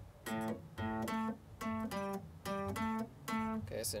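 Electric guitar playing a single-note blues shuffle riff in A: paired low notes in a steady swung rhythm, about three notes a second.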